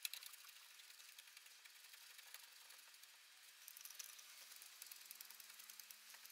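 Faint, scattered metallic clicks of hand tools during brake caliper refitting, with a quicker run of ticks a little past halfway.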